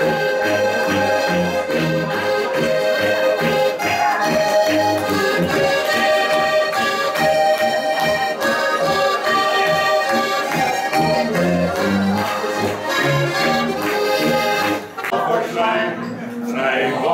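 Several Styrian diatonic button accordions (Steirische Harmonika) and a tuba playing a lively traditional Alpine folk tune, the tuba giving a pulsing bass under the accordion chords and melody. The tune stops about a second before the end, and voices follow.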